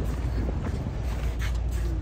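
Steady low rumble of wind buffeting the microphone, with a faint hiss of outdoor background noise and a few soft ticks around the middle.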